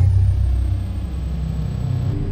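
Steady low rumble of running machinery.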